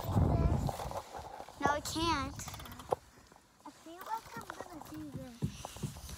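Children's high voices calling out in the background, with a low rumble in the first second and a few sharp clicks and knocks, the loudest about three seconds in.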